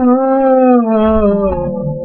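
A man's voice holding one long sung note that slides slowly down in pitch. Low guitar notes come back in near the end.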